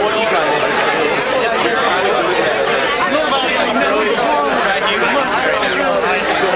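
Crowd chatter: many people talking over one another at once, a steady babble of overlapping voices with no single voice standing out.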